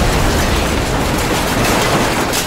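Sound effect of a building being destroyed and burning: a loud, dense, steady noise with a deep rumble.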